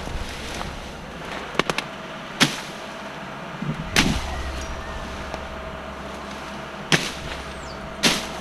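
Machete chopping through thick, leafy vines and their woody stems: a handful of sharp cuts at irregular intervals, a second or more apart, over a steady low hum.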